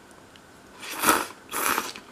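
A mouthful of green tea soba noodles being slurped with a hiss of air, in two slurps about half a second each, the first about a second in and the second just before the end.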